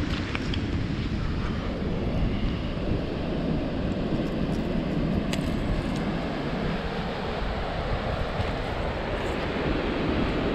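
Steady wind buffeting the microphone, a low rumble, with ocean surf rushing behind it.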